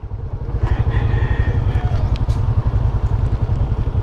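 Motor scooter engine idling with a steady low pulse.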